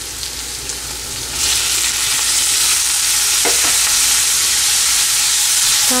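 Chopped onion and green pepper sizzling in hot oil in a frying pan. About a second and a half in, the sizzle turns suddenly louder as chopped tomatoes go into the hot oil, and it stays steady while the vegetables are stirred.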